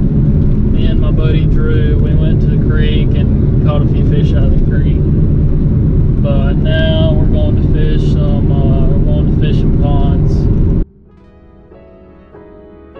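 Steady low road and engine rumble inside a moving car's cabin, with a man's voice talking over it. Near the end the rumble cuts off suddenly and soft music takes over.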